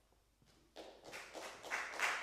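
Audience applause breaking out about three-quarters of a second in after a brief near-silence, growing louder.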